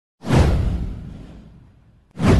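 A whoosh sound effect from an animated logo intro: it swells in suddenly with a deep rumble underneath, sweeps downward in pitch and fades away over about a second and a half.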